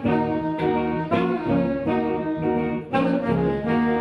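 Small jazz group playing, a tenor saxophone carrying a melody line over archtop electric guitar and electric bass.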